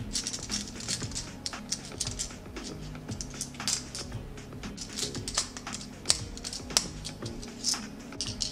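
Irregular small clicks and taps of plastic and metal: small screws being driven with a precision screwdriver to fix the plastic battery holder onto an LED Christmas tree circuit board.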